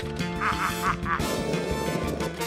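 Three quick quack-like calls in a row over upbeat background music.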